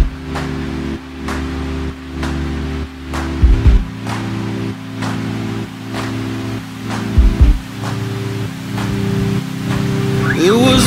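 Background music: sustained low chords over a steady beat of about two hits a second, with heavier bass-drum hits about three and a half and seven seconds in.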